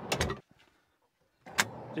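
Knocks of a carpeted Titan storage drawer at the start. After a short dead gap, one sharp click about a second and a half in as the paddle latch of the next drawer is pulled to open it.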